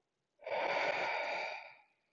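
A person's deep breath, one long, loud, airy breath lasting about a second and a half, starting about half a second in.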